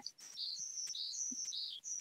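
A bird chirping faintly in the background: a string of short, high-pitched chirps repeated several times.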